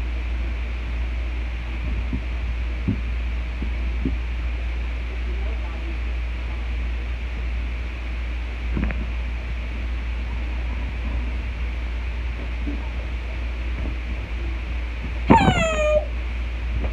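A steady low hum with a few soft knocks. Near the end comes one short, loud whine that falls in pitch.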